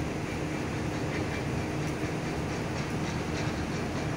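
Steady rumble of a moving train, with a low hum.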